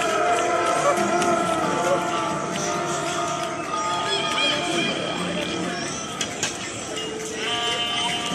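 Music playing amid the chatter of a crowd, with many voices talking over one another.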